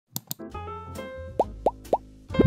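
Intro jingle of electronic sound effects: two quick clicks, then short held synth notes, then three rising 'bloop' pops about a quarter of a second apart.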